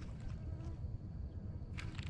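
Insects buzzing at the pond's edge over a low rumble, with a few soft clicks near the end.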